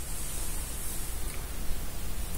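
Steady background hiss with a faint low hum underneath; no distinct event.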